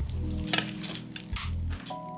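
Metal tongs moving linguine around an All-Clad D3 stainless-steel fry pan: a soft, wet stirring sound with a few sharp clicks of metal on the pan, the loudest about half a second in.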